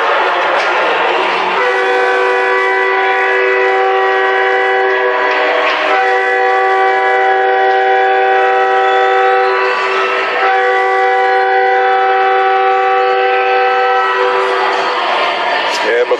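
Arena goal horn sounding a steady chord of several tones in three long blasts of about four seconds each, signalling a goal, over crowd noise.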